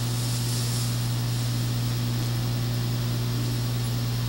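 Steady low hum with a constant hiss over it, unchanging throughout, with no other events.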